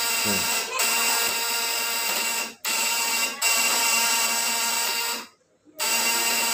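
Homemade battery-powered high-voltage inverter with vibrating contact-breaker points buzzing loudly as it drives a load. The buzz cuts out briefly about three-quarters of a second in and again around two and a half seconds in, then stops for about half a second near the end before it resumes.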